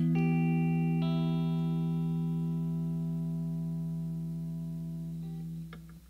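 Clean electric guitar (Telecaster-style solid body) letting the song's final chord ring. A couple of notes are picked at the start and about a second in, and the chord fades slowly until the strings are damped by hand with a faint click just before the end.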